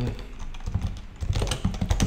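Typing on a computer keyboard: a run of quick key clicks, thickest in the second half.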